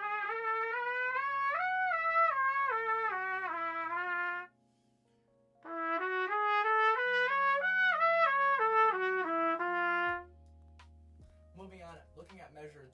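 Trumpet playing the same short lick twice, each time climbing note by note about an octave and stepping back down, with a brief pause between. It is played as a practice rep with a straightened paper clip between mouthpiece and lead pipe, leaving a slight air leak meant to make the player blow straight down the centre of the horn.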